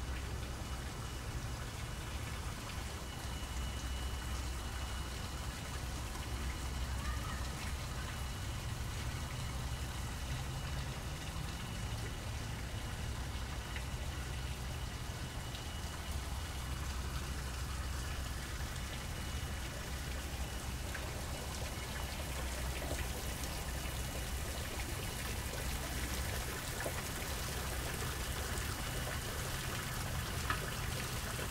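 Water trickling and splashing along a small garden stream, a steady hiss with a low rumble beneath it. The splashing grows brighter near the end, where a trickling rock-grotto cascade drips into a pool.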